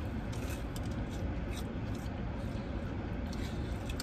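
People chewing battered corn dogs: faint, scattered crisp clicks and wet mouth sounds over a steady low hum inside a car cabin.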